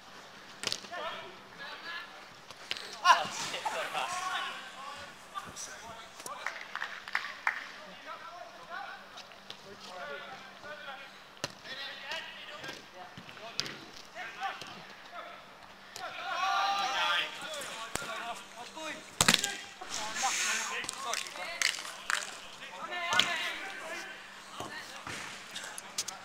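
Five-a-side football in play: players shouting and calling to each other, with sharp thuds of the ball being kicked. A burst of shouting comes about two-thirds of the way through, around a goalkeeper's save.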